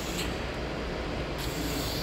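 Steady rushing, hissing noise of air-moving machinery running, with a low hum underneath and no change in pitch.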